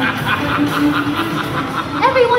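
Stage-show soundtrack music played over loudspeakers: a held low note under quick repeated higher notes, about five a second.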